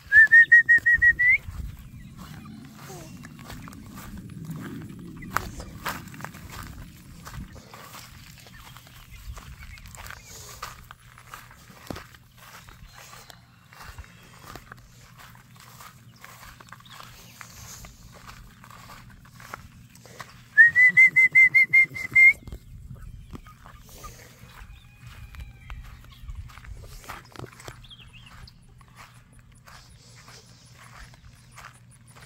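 A short, loud trilled whistle, a rapid string of notes rising slightly in pitch, heard twice about twenty seconds apart, with faint rustling and clicks in between.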